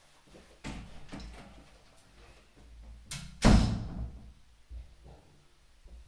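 A door closing with a bang about three and a half seconds in, the loudest sound, after a couple of lighter knocks.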